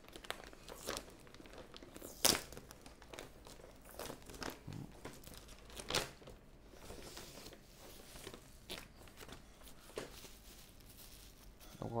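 A plastic courier mailer bag crinkling and tearing as it is opened by hand. There are irregular crackles, with a few sharper ones about two and six seconds in.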